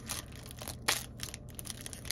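A Topps 2022 Series 1 baseball card pack wrapper crinkling as it is torn open, in irregular crackles with one sharp snap a little under a second in.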